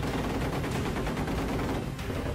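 Gepard anti-aircraft tank's twin 35 mm autocannons firing a continuous rapid burst, the shots running together into one steady rattle.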